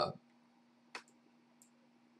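A single computer mouse click about a second in, followed by a much fainter tick, over a faint steady hum.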